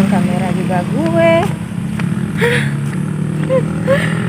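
A motor vehicle engine running with a steady low hum. Over it, a woman's voice sounds in short pitched phrases in the first second and a half, then in a few brief sounds later.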